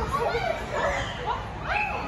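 Children's high-pitched voices: short squeals and calls, several gliding upward, over a general background of children's chatter.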